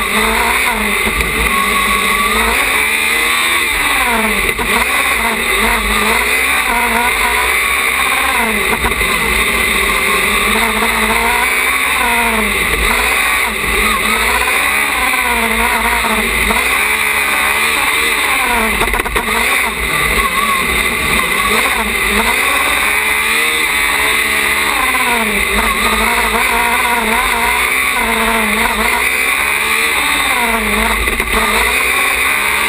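Small open-wheel race car's engine heard from the cockpit, its pitch climbing and falling again every couple of seconds as the car accelerates and brakes between cones, with a constant low rush of wind buffeting the microphone.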